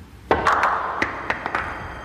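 A pool cue driving the cue ball into a tight cluster of billiard balls: a sharp crack, then a quick run of clacks as the balls strike each other and the cushions over about a second.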